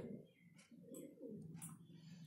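Near silence, with a faint low cooing of a bird in the background.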